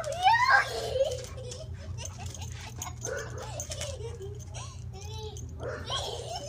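A young girl's excited high-pitched squeals and vocalising, loudest in the first second and fainter afterwards, over a steady low hum.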